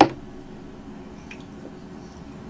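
A metal fork cutting down through a soft slice of sweet potato cake, with one sharp knock at the start as it meets the wooden board beneath, then a few faint soft clicks as a forkful is lifted.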